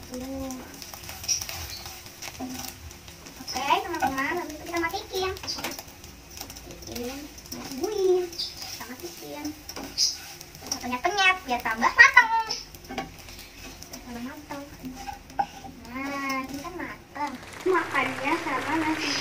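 Wooden spatula stirring and scraping scrambled eggs in a nonstick frying pan, with scattered knocks of the spatula against the pan. A child's voice speaks now and then over it, loudest about two-thirds of the way in.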